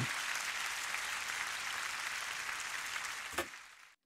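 Live concert audience applauding at the end of a song, heard as playback of the concert recording: an even wash of clapping that cuts off with a click about three and a half seconds in.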